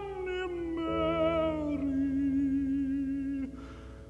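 A classical ballad for tenor voice and piano between phrases: a held melody line stepping down in pitch, growing quieter near the end.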